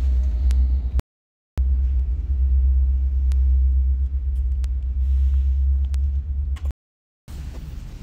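Hyundai Sonata's 2.4-litre four-cylinder engine idling as a steady low rumble, heard close to the dual exhaust. The sound cuts out completely twice for about half a second each, about a second in and near the end.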